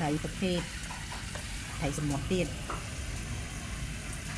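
Two cats eating rice mixed with fish off a plate, close to the microphone: a steady run of small chewing and smacking noises.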